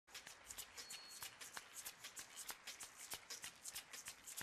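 Faint hand clapping from a crowd: many quick, irregular claps.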